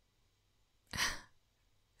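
A woman's single short, breathy exhale close to the microphone, about a second in, with no voice in it.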